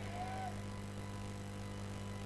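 Steady low electrical hum, strongest in its bass, with faint held tones above it and a faint tone rising slightly in pitch in the first half second.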